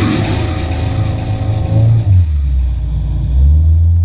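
Motorboat engine running under load with a deep, steady drone that steps up in pitch about two seconds in and again near the end as the throttle is opened. Rushing water and wind hiss fade in the first half.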